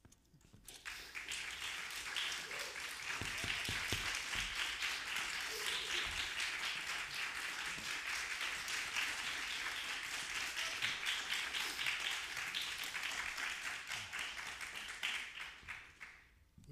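Audience applauding. The clapping swells in about a second in, holds steady, and dies away near the end.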